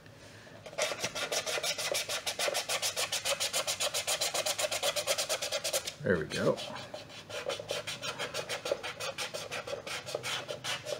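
A hand rubbing fast back and forth over a painted plastic stormtrooper armor piece, wiping and smearing the black paint to weather it: a rhythmic rasp of quick strokes. It breaks off briefly around six seconds, then resumes a little slower.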